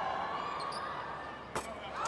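Steady, subdued arena noise with a single sharp knock of the basketball about one and a half seconds in, as a free throw drops through.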